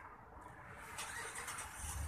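Low rumble of road traffic, a car passing and growing louder near the end, with a faint click about a second in.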